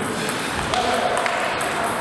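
Table tennis ball being hit back and forth in a rally: a few sharp clicks of the ball off paddles and table.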